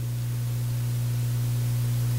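Steady low electrical mains hum with a faint hiss, carried by the microphone and sound system.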